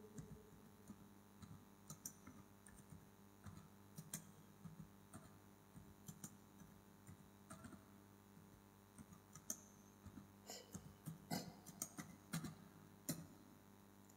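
Near silence, broken by faint, irregular small clicks and ticks that come more often between about ten and thirteen seconds in.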